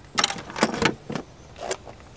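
Steel military surplus ammo can lid swung shut and latched: a run of short metal clanks and clicks from the hinge, lid and latch.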